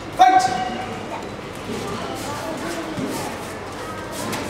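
A single loud, short shout from a person's voice a moment after the start, over a lower background of voices in a large hall.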